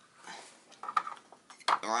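A few small, sharp clicks and clinks from model railway track being handled by hand, its metal rails and plastic sleepers knocking against each other and the baseboard, in the second half.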